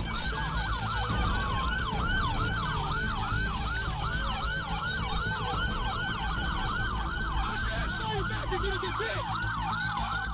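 Police car siren in its fast yelp mode: a rising-and-falling wail repeating about four times a second, with a few brief sharp sounds over it.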